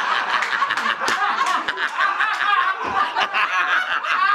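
Men laughing hard in overlapping, ragged bursts.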